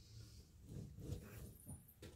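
Near silence: faint room tone with a low hum and a few soft, small clicks.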